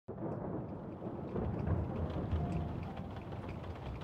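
Thunderstorm ambience: steady rain with a low, rolling rumble of thunder under it, starting suddenly at the very start.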